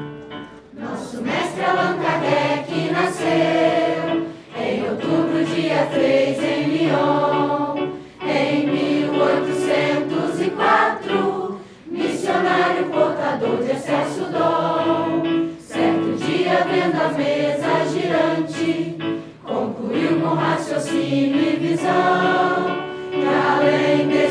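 Mixed choir of children and adults singing a hymn in Portuguese, accompanied by a Yamaha digital piano. The singing comes in phrases of about four seconds with brief breaths between.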